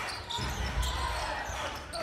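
Basketball being dribbled on a hardwood court, over the general murmur of an indoor arena.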